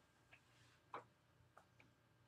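Near silence: room tone with a few faint, short clicks, the clearest about a second in.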